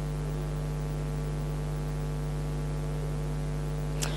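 Steady electrical mains hum on a live broadcast audio line: a low, unchanging tone with a ladder of evenly spaced overtones and a faint hiss.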